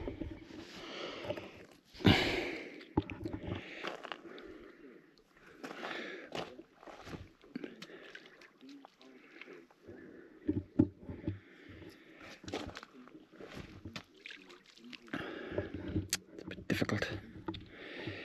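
Stones skimmed one after another across a calm tarn: short sharp knocks and brief splashes each time a stone strikes the water, with quiet gaps between throws.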